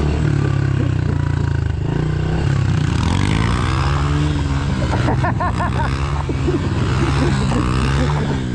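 Small single-cylinder Honda pit bike engines: one running steadily close by, with another bike's engine revving up and down as it is spun in doughnuts.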